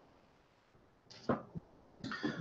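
A quiet room pause, then about a second in a short downward whoosh and a small sharp click: a laptop key pressed to advance the presentation slide.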